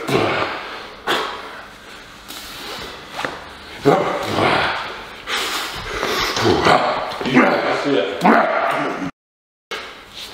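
A man breathing hard in a string of short, forceful huffs and grunts, about one a second, as he psyches up and rocks a pair of 60 kg dumbbells up from his knees to start a heavy incline dumbbell press.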